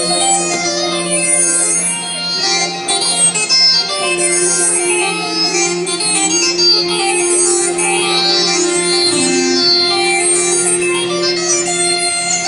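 Instrumental passage by an Arabic orchestra playing live: long held notes over a steady low drone, with a melody moving above, and no singing.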